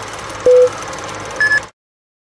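Film-countdown leader sound effect: a short, low beep with a click about half a second in, then a briefer, higher-pitched beep near the end of the count. Both beeps sit over a steady hiss and hum, and all of it cuts off abruptly.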